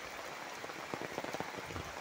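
Steady rain falling on a wet paved lane, with a scatter of close, sharp drop ticks in the second half.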